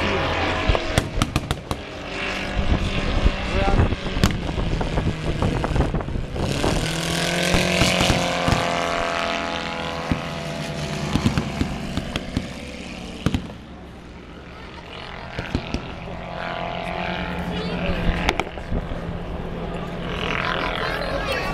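Propeller aircraft engines droning as small planes fly low display passes, with people talking. One plane grows louder about six seconds in, its engine note shifting in pitch, and the engines drop to a quieter lull around fourteen seconds.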